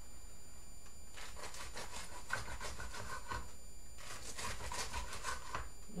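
A bread knife sawing through a crusty loaf on a wooden cutting board: two runs of quick back-and-forth strokes, the second starting after a short pause, with the crust crunching under the blade.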